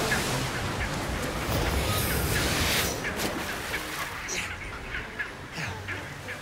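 Chinstrap penguins calling in many short squawks over surf breaking on rocks. The rush of the waves is heaviest in the first half and eases after about three seconds, while the calls carry on.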